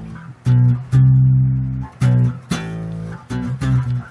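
Four-string Rickenbacker electric bass playing octave double stops: a root and its octave plucked together with thumb and first finger, about six times, each pair ringing for up to a second.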